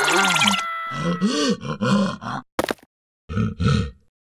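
Cartoon character vocal sounds: a string of short grunts whose pitch rises and falls, over a ringing tone that fades out in the first second, then a short click and two more grunts before the sound cuts off.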